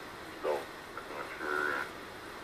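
Single-sideband voice received on the 40 m ham band: two brief, narrow-band snatches of a voice, one about half a second in and one in the second half, over a steady hiss of band noise.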